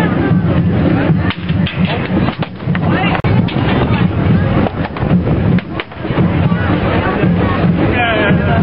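Painted barrel drums beaten in an irregular run of sharp strikes, with a crowd talking over a steady low sound.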